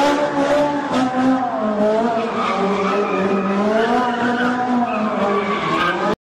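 Car tyres squealing continuously as cars skid and spin, the pitch wavering slowly up and down.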